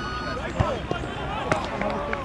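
Distant shouts and calls of footballers across an open grass pitch, with two sharp thuds, about half a second and a second and a half in, typical of a football being kicked.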